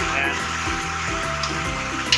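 Water pouring in a stream into a basin of ground coconut leaves, a steady splashing rush, over background music.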